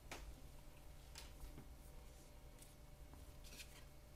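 Near silence, with a few faint, brief rustles and taps of trading cards being handled and laid down on a table.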